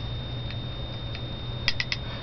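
Three quick, sharp clicks close together near the end, with two fainter ticks earlier, over a steady low hum and a faint high-pitched whine.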